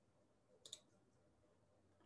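Near silence with one faint, short click about two-thirds of a second in: a computer click that advances a presentation slide.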